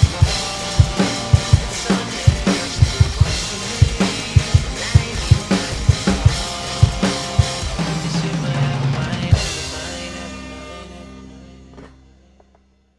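Drum kit, with Zildjian cymbals, played along to a hip-hop backing track: steady kick and snare hits with cymbals. About nine seconds in a final hit rings out and the sound fades away.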